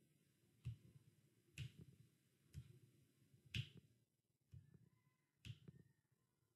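Six sharp taps or snaps, evenly paced at about one a second, over an otherwise quiet background.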